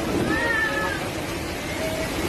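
Typhoon wind and heavy rain blowing steadily, with one short, high cry that rises and falls over most of a second about a quarter of a second in.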